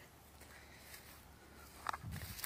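Faint outdoor background noise with no distinct source, broken only by one brief soft sound near the end.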